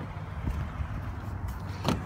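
Rustling and low rumble of the camera being handled as someone climbs into the front seat of an SUV, with one sharp knock near the end.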